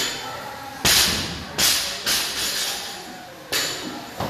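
Barbell and bumper plates knocking on a rubber gym floor: four sharp thuds and clanks, the loudest about a second in, then two more close behind it and a last one near the end.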